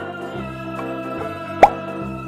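Background music with steady organ-like tones, cut by a single short, loud plop about one and a half seconds in whose pitch sweeps sharply upward, as the plastic surprise egg holding the fish and water is opened.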